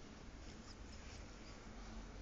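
Faint small clicks and a few tiny high squeaks from a puppy mouthing and nibbling a person's fingers.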